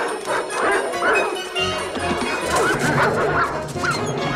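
An animal crying out in two runs of short calls that bend up and down in pitch, over dramatic film-score music.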